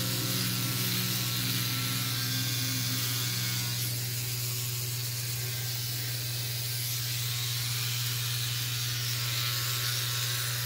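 Handheld electric trimmer running with a steady buzz as it is drawn over stubble on the neck.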